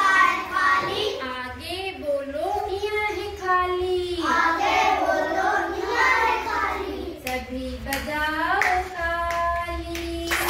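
Group of children singing a Hindi alphabet song together, drawing out long notes, with hand claps, a few sharp ones standing out in the second half.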